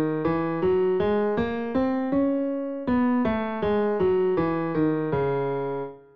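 Piano playing a C# melodic minor scale an octave below written pitch, in even single notes about three a second. It steps up to the top C#, holds it a little longer about two seconds in, then steps back down and ends on the low C# near the end.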